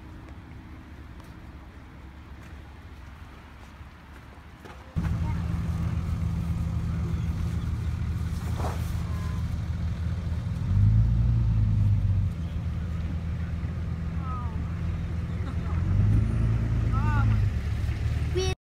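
A motor vehicle engine running steadily. It comes in suddenly about five seconds in and grows louder twice for a second or so.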